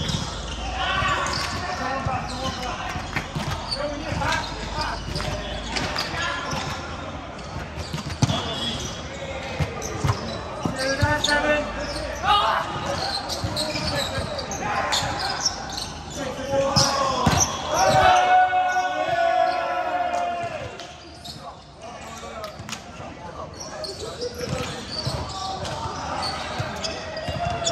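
Basketball game in a gym: a ball bouncing on the court with repeated knocks, mixed with indistinct players' shouts and calls echoing in a large hall.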